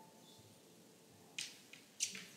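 The last note of a grand piano dying away, then near silence broken by a few faint sharp clicks, the loudest near the end.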